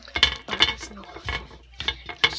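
Irregular clicking and clattering of small hard plastic objects being handled and knocked together, like doll toys being moved about.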